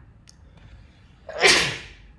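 A man sneezes once, a sudden loud burst about one and a half seconds in.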